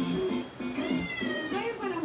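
A kitten meowing: one long, high meow that falls slightly in pitch about a second in, followed by shorter mews, over background music.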